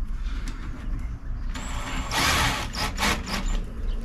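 Cordless drill-driver running up about a second and a half in, driving a screw into a pre-drilled hole in plywood, loudest for a moment just after two seconds.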